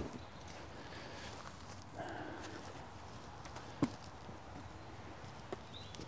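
Quiet outdoor air with a single sharp knock about two-thirds of the way through and a fainter click near the end: carved wooden game balls being handled.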